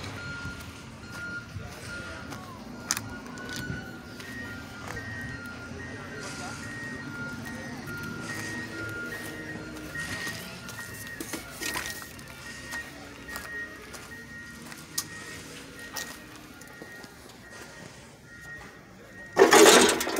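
A faint, simple electronic tune of single high beeping notes plays on, stepping up to a slightly higher note after a few seconds, with scattered sharp clicks.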